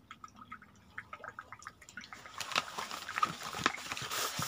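Light water dripping and trickling through the first half. About halfway through, louder rustling and soft taps take over as cards are laid down on a cloth-covered table.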